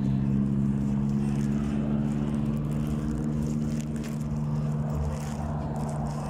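A motor vehicle's engine running steadily with a low, even hum; part of the hum fades about four seconds in.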